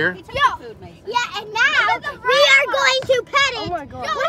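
Children's high-pitched excited voices: a string of short squeals and exclamations without clear words.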